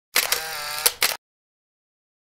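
Camera shutter sound effect: a sharp click, a brief whir, and two more clicks at the end, lasting about a second.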